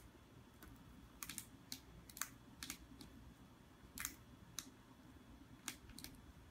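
A cat's claws tapping and scratching on a cardboard box as it paws along the top toward a cucumber, in about a dozen light, irregular clicks.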